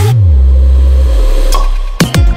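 Electronic dance music breakdown: the drums and highs drop out, leaving a loud deep synth bass note that swoops up and back down at the start, then holds and sinks lower. A faint higher tone comes in near the end.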